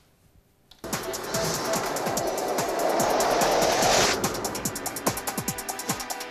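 Electronic music sting for a match-summary bumper, starting after a second of near silence: a swelling, hissing build-up that cuts off about four seconds in, then a fast pulsing beat.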